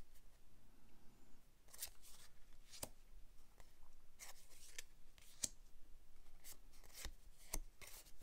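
Board-game cards handled in the hands, a small stack fanned and squared: faint, scattered clicks and rubs of card stock.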